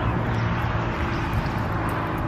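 A steady low engine hum, like a vehicle running, over an even outdoor noise.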